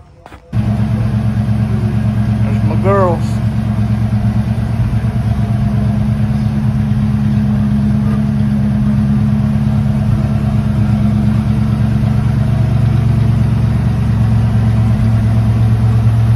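An early Ford Mustang's engine idling steadily, cutting in suddenly about half a second in. A short rising-and-falling call sounds once over it about three seconds in.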